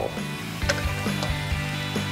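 Background music of sustained, steady tones, with a few light clicks.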